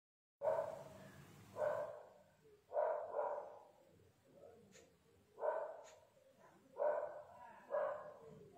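A dog barking: about seven short barks at irregular intervals, some in quick pairs.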